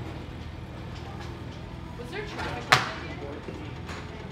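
A golf club striking a ball off a driving-range hitting mat: one sharp crack about two-thirds of the way in, over a low steady background hum.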